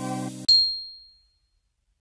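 Background music on a held chord, cut off about half a second in by a single bright high-pitched ding, an outro logo chime that rings and fades away within a second.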